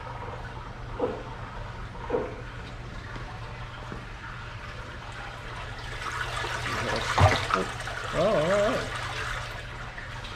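Water sloshing and splashing in an aquarium as a young alligator is let go into it, building about six seconds in to a sharp splash near the seventh second, over a steady low hum. A brief voice-like sound follows just after the splash.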